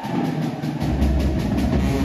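High school marching band playing: brass, sousaphones and drumline. The band gets louder at the start, a heavy low bass comes in under it less than a second in, and a steady drum beat runs throughout.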